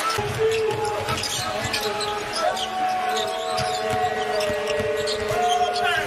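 A basketball bouncing on a hardwood court amid arena crowd noise, with a couple of long steady tones held over it in the second half.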